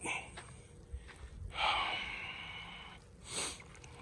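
A person's breath close to the microphone: a long, noisy exhale about one and a half seconds in that fades away, then a short, sharp sniff-like intake a little after three seconds.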